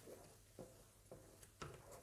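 Near silence, with a few faint scrapes as a wooden spoon stirs caramel in a saucepan.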